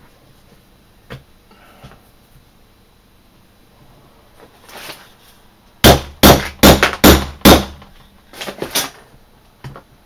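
Hammer blows on a leather hole punch driving through leather over a piece of metal: a quick run of about six hard strikes a little before halfway, then two or three lighter ones.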